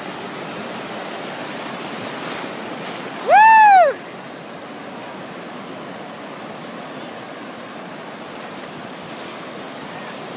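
Ocean surf washing and breaking steadily on the shore. About three and a half seconds in, one loud high call rises and falls in pitch over less than a second.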